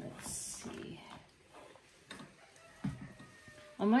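A pin brush drawn through an Airedale terrier's wiry coat: one short hissing stroke at the start, then faint handling of the fur, with a brief low sound about three seconds in.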